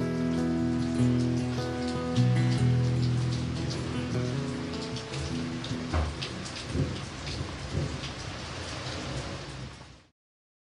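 The song's final acoustic-guitar chord rings and fades over the first few seconds. It gives way to steady rain falling on wet concrete and grass, with many individual drops ticking and a brief low rumble about six seconds in. The sound cuts off abruptly at the end.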